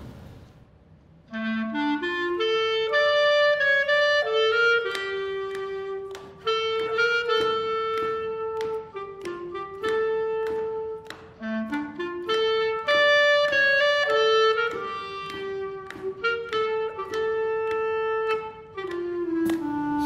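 Solo clarinet playing a klezmer tune's opening melody straight, in plain classical style without bent notes, starting about a second in. The rising opening phrase comes round again about halfway through.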